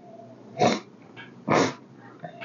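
Two short, sharp sniffs about a second apart, a man nosing a glass of bourbon.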